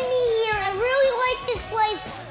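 A young child talking in a high-pitched voice.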